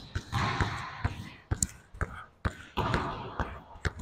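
A basketball being dribbled hard on a gym court in a between-the-legs and crossover ball-handling drill, bouncing about twice a second.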